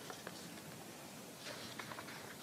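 Faint light clicks and rustles, as of small handling noises, just after the start and again about a second and a half in, over quiet room tone.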